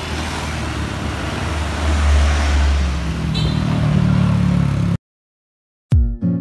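Road traffic: a passing vehicle's engine and tyre noise, a low rumble that swells about two seconds in and takes on a steady engine note before cutting off abruptly near the end.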